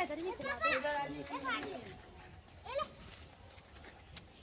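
A small child's high-pitched voice chattering and calling out for about two seconds, then quieter, with one short rising call about three seconds in.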